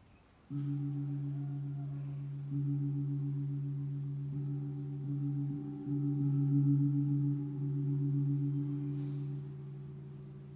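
A deep-toned gong struck about five times, less than two seconds apart, each stroke ringing on into the next and the ring fading away near the end. It is rung to mark the elevation at the consecration of the Mass.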